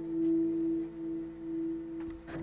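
A fiddle holding the last long note of a tune: a single clear tone that swells and eases slightly in loudness.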